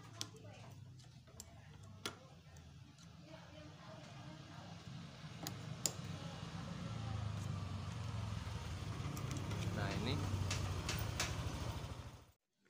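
Small metallic clicks and scrapes of a small flathead screwdriver prying the broken rear-brake cable end out of a scooter's brake lever. A low hum underneath grows louder through the second half.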